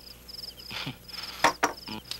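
Crickets chirping in short, evenly repeating pulsed trills. A couple of sharp knocks come about one and a half seconds in.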